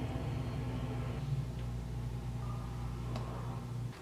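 Steady low hum with a faint click about three seconds in.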